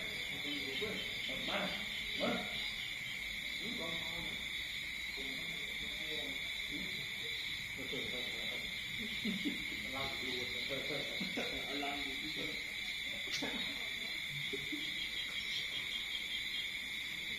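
Insects trilling steadily in two high, unbroken tones, with faint voice-like calls coming and going beneath them.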